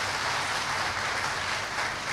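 Audience applauding, a steady clapping that eases off slightly near the end.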